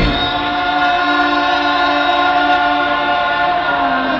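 Several voices of a live band singing a long held harmony together, with the bass and drums dropped out. Near the end the chord shifts to a lower note.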